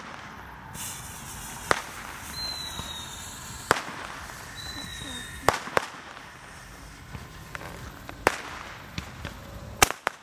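Handheld Roman candle firing its shots: sharp pops every one to two seconds, about six in all, over a steady hiss.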